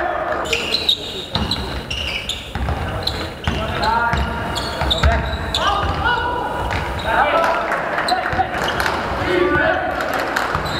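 A basketball bouncing on a hardwood sports-hall floor during live play, with players calling and shouting, all echoing in a large gym.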